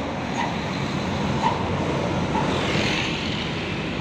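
Mercedes-Benz O500R 1836 coach driving past, a steady run of diesel engine and tyre noise, with other street traffic behind it.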